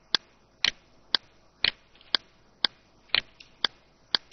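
A computer mouse clicking: sharp, evenly spaced clicks, about two a second.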